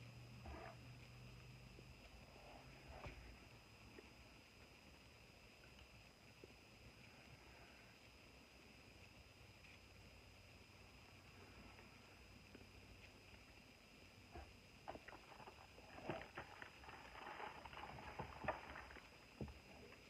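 Mostly near silence with faint quiet chewing of a cake. From about fifteen seconds in there is a run of soft crackles and taps as a cardboard snack box is handled.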